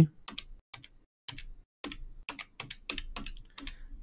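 Keys pressed in a quick, uneven run of about eighteen light clicks, as a sum is keyed in.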